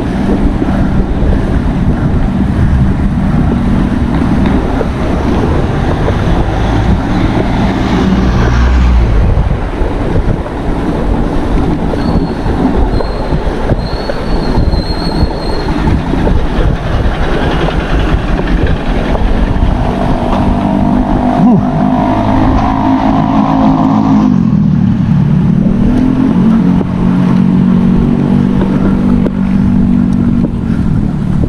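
Wind rushing over an action-camera microphone on a moving bicycle, with the hum of a motor vehicle's engine mixed in; the engine tone grows stronger in the second half and dips and rises in pitch near the end.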